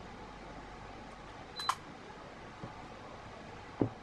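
Racket stringing handled by hand: a pair of sharp clicks about halfway through and a low knock near the end, as the BG66 string is woven through the badminton racket's crosses on the stringing machine, over steady room noise.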